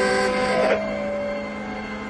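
Cartoon ice cream truck driving up: a steady low hum with several held tones above it.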